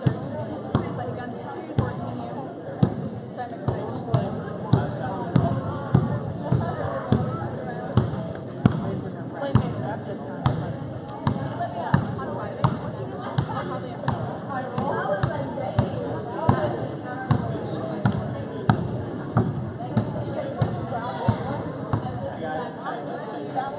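A basketball being dribbled on a gym floor, bouncing about one and a half times a second in a steady rhythm, over the chatter of a crowd in the gym.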